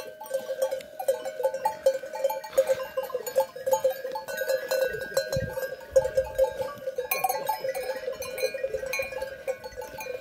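Sheep bells clanking without pause as the flock moves about, several uneven strikes a second.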